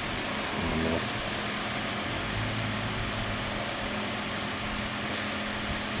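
Steady background hiss with a faint low hum, with no distinct event standing out.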